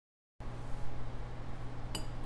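Dead silence for the first half-second, then a faint, steady low hum of room tone, with a small click near the end.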